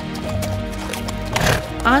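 A short cartoon animal-call sound effect for the donkey, about a second and a half in, over steady background music.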